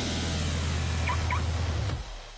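Car engine sound effect in a radio jingle: an engine running with a rapid low burble, with two short rising chirps about a second in. The sound drops away at the end.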